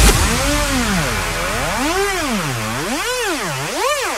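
Electronic bounce track breakdown with the drums dropped out, leaving a lone synthesizer tone that swoops up and down in pitch like a siren. The swoops speed up as it goes, building toward the next drop.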